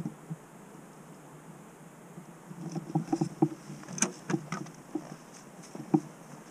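An irregular run of light clicks and knocks that starts about two and a half seconds in, with one sharp click near the middle, over a faint outdoor background.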